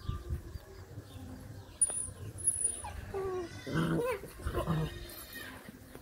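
Puppies play-fighting, with scuffling on gritty ground and a cluster of short puppy vocalizations about three to five seconds in, some falling in pitch.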